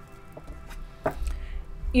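Soft background music with steady held notes, under a few soft taps and rustles of a deck of cards being shuffled by hand, the loudest about a second in.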